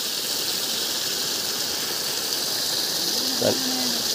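Water gushing from two pipe outlets of a well pump's Y-joined discharge line and splashing onto the ground, a steady rush.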